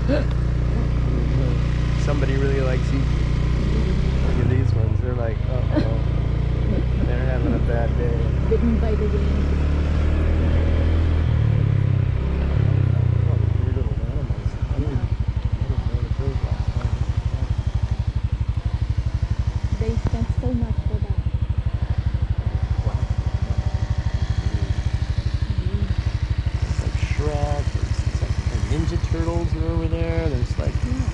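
Motorcycle engine running at low road speed. Its pitch shifts a few times in the first half, then settles into a steady, rapid pulsing from about halfway.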